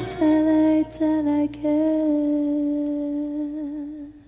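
A woman's voice singing long, held notes into a microphone, with two short breaks early on. A faint low accompaniment drops out about two seconds in, and the last note fades away near the end.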